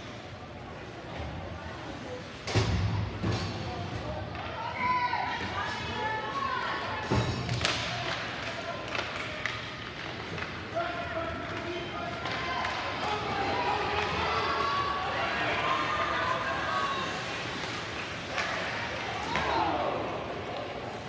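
Ice hockey game heard from the stands: several sharp thuds of play against the rink boards, the loudest a couple of seconds in and again about seven seconds in, with voices calling out through much of the rest.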